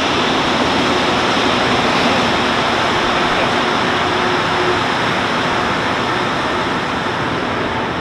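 Rubber-tyred Montreal Metro train running into a station platform: a loud, steady rushing noise, with a faint low hum that fades out about halfway through.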